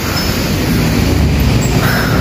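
Small engine of a three-wheeled cargo motorcycle running steadily as it drives close past, over a low street rumble.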